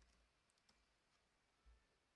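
Near silence with a few very faint clicks of computer keyboard keys as a command is typed and entered.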